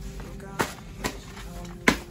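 Loose sheets of paper being handled and gathered into a stack, with three sharp crisp paper sounds, the loudest near the end.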